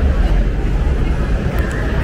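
Busy city street ambience: a steady low rumble of road traffic with people's voices in the background.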